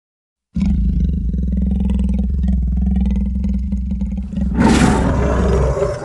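A loud, low monster roar sound effect that starts suddenly about half a second in, turning harsher and brighter for its last second or so before fading.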